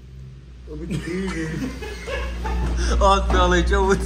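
Voices talking and chuckling, with a steady low hum underneath.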